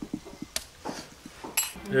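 A fork and a stainless steel frying pan being handled, with a few light taps and one sharp metallic clink near the end.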